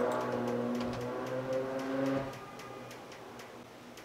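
A man's voice humming one steady low note for a little over two seconds, with light clicks from a computer keyboard and mouse scattered through it.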